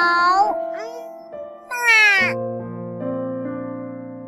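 Two high cat meows, the second a falling meow about two seconds in, over calm piano background music whose held notes then slowly fade.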